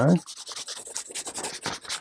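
Soft 5B graphite pencil shading on drawing paper: a quick run of short back-and-forth strokes laying down grey tone.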